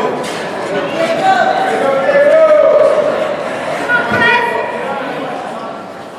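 Voices shouting in a large echoing hall, loudest in one long drawn-out shout about two seconds in, over a background of spectator chatter.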